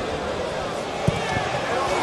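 Stadium crowd noise on a TV broadcast, steady and expectant, with a single dull thud of a football being struck about a second in: a free kick.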